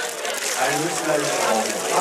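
Water pouring from a tipped bucket and splashing over a man's head onto the wooden pillory and the ground, a steady rushing splash, with voices talking over it.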